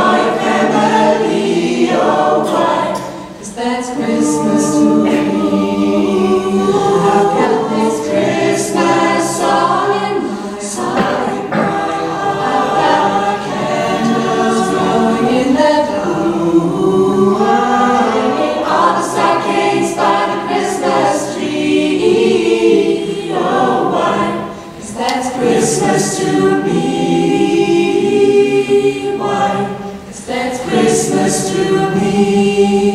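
Mixed-voice teenage a cappella ensemble singing in close harmony through microphones, with short breaks between phrases about three seconds in and again near 25 seconds.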